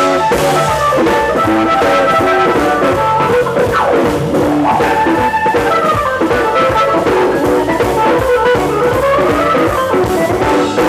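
Live blues band playing an instrumental passage: electric guitar over electric bass, drum kit and keyboard, with a note sliding up and down near the end.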